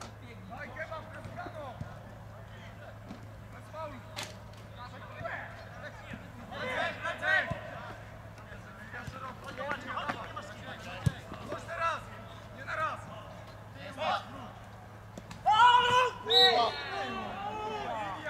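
Players shouting and calling to each other across a football pitch during play, with a loud burst of shouting near the end. A couple of sharp knocks, typical of the ball being kicked, and a steady low hum sit underneath.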